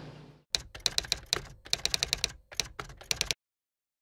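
Typing sound effect: a quick, irregular run of key clicks lasting about three seconds, then stopping suddenly.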